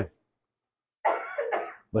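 A man coughs to clear his throat, one short rough cough of under a second, starting about a second in.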